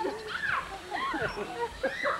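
A group of adults laughing and whooping, their voices sliding up and down in pitch.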